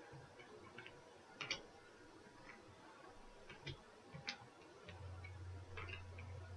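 Faint, irregular clicks and taps of playing-card-sized tarot cards being handled and picked from a spread on the table, about six light ticks spread across the stretch. A low steady hum comes in near the end.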